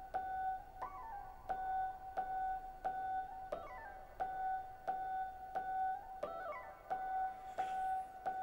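A Mutable Instruments Elements synthesizer voice plays a struck, bell-like note at a steady pulse of about three notes every two seconds, gated by a square LFO. Most notes repeat on one pitch, but three times a note steps quickly upward. This is the quantized muscle-sensor signal changing the melody while the rhythm holds.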